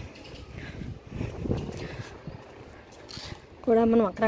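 Quiet outdoor background noise with a few faint, irregular low rumbles, then a voice starts speaking near the end.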